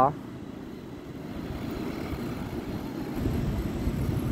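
Wind buffeting the microphone over the steady rumble of surf, growing louder with a deeper rumble near the end.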